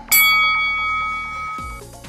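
A single bell-like chime, the interval-timer signal for the start of an exercise. It is struck once and rings with several clear tones, fading over about a second and a half. It sounds over background electronic music with a steady beat.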